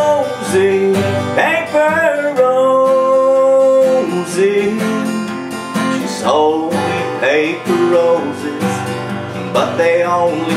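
A man singing in long held notes while strumming chords on an acoustic guitar, a slow sentimental song.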